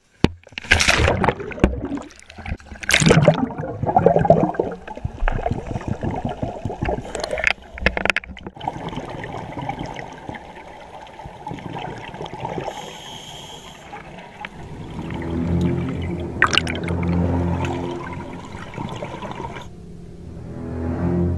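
Sea water splashing and sloshing against the camera at the surface in loud, irregular bursts, then a steady muffled underwater rush and bubbling once it is below. Low, deep bowed-string music comes in about three-quarters of the way through.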